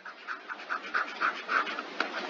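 Stylus scratching on a tablet screen in short repeated strokes, several a second, as words are handwritten, over a steady faint hiss.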